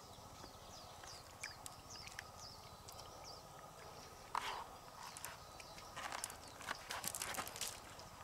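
Quiet handling sounds of hands working in an opened freshwater mussel shell on rock. There is one sharp knock about four seconds in and a cluster of knocks and rustles near the end. Faint high falling chirps repeat in the first few seconds.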